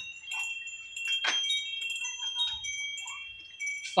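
Wind chimes ringing, several high steady notes overlapping and dying away. One short click sounds just over a second in.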